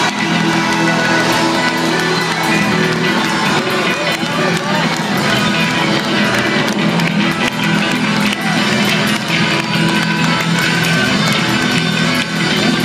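Progressive rock band playing live, heard from among the audience: guitar, keyboards and drums at steady full volume, with the crowd's voices mixed in.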